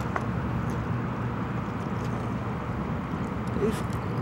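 Steady rush of fast-flowing water below a hydroelectric powerhouse, with a low, even hum underneath.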